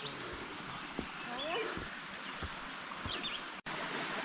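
Steady rush of a flowing creek, with a couple of soft footsteps and faint, brief calls in the background. The sound drops out for an instant near the end.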